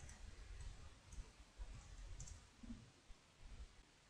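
Near silence: faint room hum with a few faint, short computer clicks.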